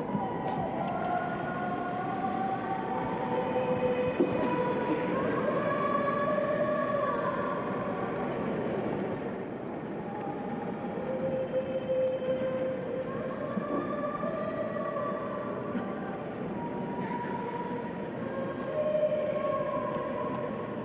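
A woman singing a slow melody of long held notes, over steady background noise.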